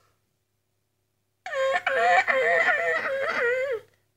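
A high-pitched voice making a wavering, sing-song vocal sound for a little over two seconds. It starts about one and a half seconds in and breaks off briefly just after it begins.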